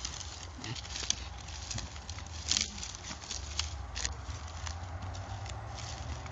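Footsteps: scattered light scuffs and clicks over a steady low rumble, one sharper click about two and a half seconds in.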